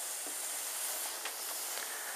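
A steady hiss.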